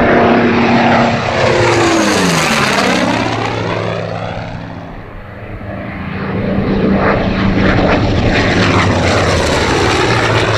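F4U-4 Corsair's Pratt & Whitney R-2800 radial engine and four-blade propeller in a low fly-by. Its engine note drops steeply in pitch as it passes in the first few seconds, fades around the middle, then grows loud again as the plane comes back toward the listener.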